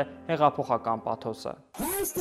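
Speech only: a male news presenter talking in Armenian. Near the end, after a brief gap, another man's voice takes over, speaking into a handheld microphone.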